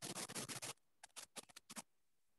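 Faint scratching and rustling close to a microphone: a dense run of quick scratchy strokes, then a few separate scratches, stopping just before the end.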